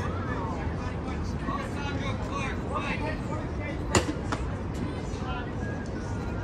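Outdoor ballfield sound: distant shouting and chatter of players and onlookers over a steady low city rumble. One sharp crack about four seconds in.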